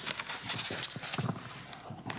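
Papers rustling, with light, irregular clicks and knocks at a desk, as documents are leafed through.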